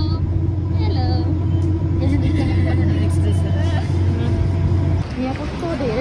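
Vehicle engine running with a steady low drone, heard from inside the passenger compartment, that ends abruptly about five seconds in, with faint voices underneath.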